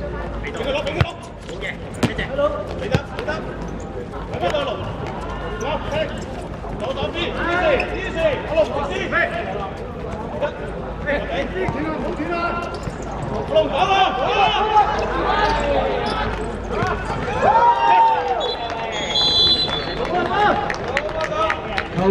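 Footballers calling and shouting during play on an outdoor artificial pitch, with the sharp thuds of a football being kicked scattered through.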